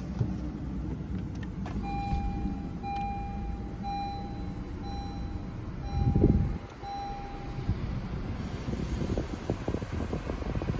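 Honda CR-V warning chime beeping six times, about once a second, the alert for an open door while the car is switched on. A brief low rumble comes about six seconds in, the loudest moment.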